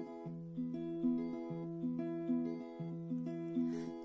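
Acoustic guitar with a capo on the third fret, picking out the chords of the song's introduction: the notes of each chord enter one after another and ring on, with a new chord about every second and a quarter.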